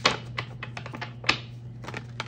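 A tarot deck being shuffled by hand, the cards clicking and tapping in an irregular run, with two louder snaps: one at the start and one a little past halfway.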